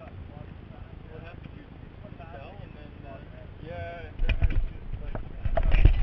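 Faint talking for the first few seconds, then loud rumbling bumps and rubbing from the camera's microphone being handled, starting a little over four seconds in.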